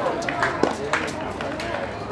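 Junior tennis rally on a hard court: several sharp knocks of the ball off rackets and the court, with voices chattering in the background.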